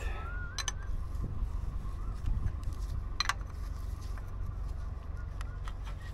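Two sharp metallic clinks of an open-end wrench on a diesel fuel line fitting as it is snugged tight, over a steady low rumble.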